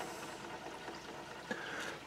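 Faint, steady hiss of water running through the basement supply pipes and water meter while the lines are flushed, with a small click about one and a half seconds in.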